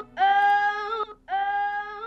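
A single sung vocal note repeating about every 1.2 seconds as delay echoes, each a little quieter than the last, heard on its own without the rest of the mix. The echoes come from a half-note delay (FabFilter Timeless) on the vocal track.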